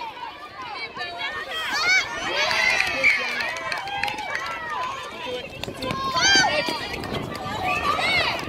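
Several voices calling out over one another during an outdoor netball match, some short high-pitched shouts among them, with footfalls of players running on the hard court.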